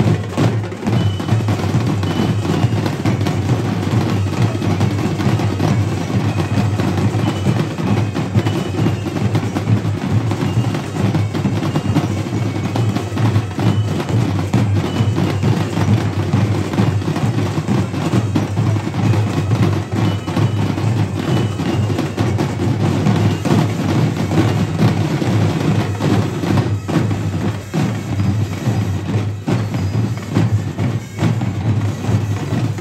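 Marching drumline of snare and multi-tenor drums playing a fast, unbroken percussion cadence with rolls.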